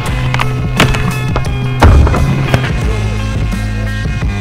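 Rock music with the scrape of skis sliding along a terrain-park rail. A heavy thud about two seconds in is the loudest sound.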